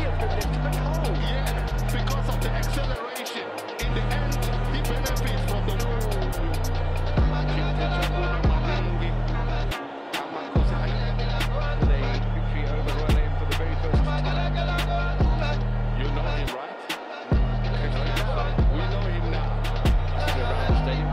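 Background music with a heavy bassline and a steady beat, which drops out briefly three times.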